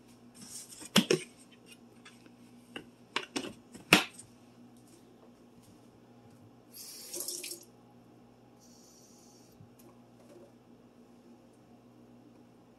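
Kitchen prep sounds: a spoon clinking and knocking against a ceramic mug a few times in the first four seconds, then a short splash of running water about seven seconds in, over a steady low hum.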